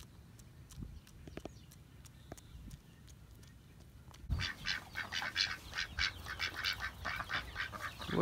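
A few faint clicks over quiet outdoor background, then from about halfway through a rapid, irregular run of short bird calls, several a second.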